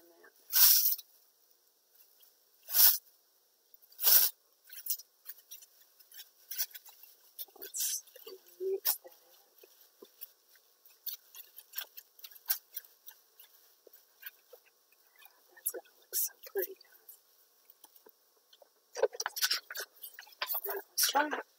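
Clear plastic wrap crinkling and crackling as a hand presses and rubs it down over wet ink on paper, with three louder sharp bursts in the first few seconds and many small scattered crackles after.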